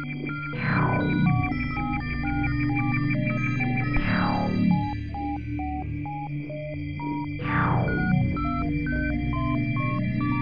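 Electronic synthesizer music from the ZynAddSubFX software synth playing in LMMS: a quick stepping run of short bleeping notes over steady drone tones. A falling sweep from high to low pitch comes about every three and a half seconds, three times.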